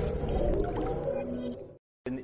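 The tail of a channel intro music jingle, its sustained tones dying away, then cutting to silence shortly before the end.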